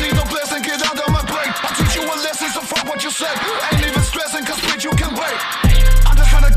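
Hip hop track with rapped vocals over a beat of repeated descending bass slides. Shortly before the end a louder, sustained deep bass comes in and the beat gets heavier.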